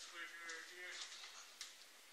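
A man's voice speaking briefly and quietly, then a single sharp click a little after halfway through.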